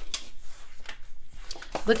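Sheets of a pad of patterned craft paper being turned and handled by hand: a string of soft rustles and small taps.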